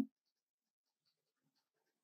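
Near silence, with a few very faint light ticks of a paper sticker being handled with tweezers on a planner page.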